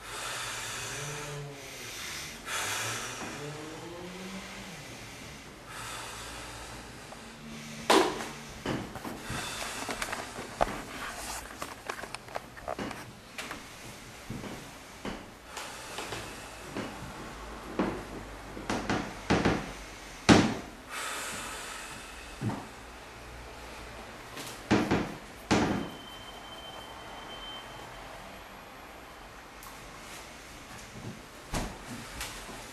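Loud, heavy breathing from the man being massaged, with a few voiced sighs or moans in the first seconds. From about eight seconds in, irregular sharp knocks and clicks follow, some loud, scattered through the rest.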